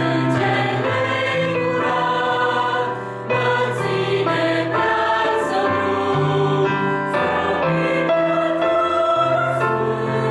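Mixed choir of women's and men's voices singing a hymn in sustained chords with piano accompaniment, with a short break between phrases about three seconds in.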